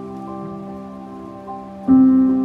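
Soft, slow piano music: held notes fade away, then a new chord is struck loudly near the end. A faint steady rush of a flowing stream runs underneath.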